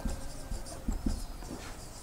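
Marker pen writing on a whiteboard: a run of short scratchy strokes and light taps of the tip as a word is written out.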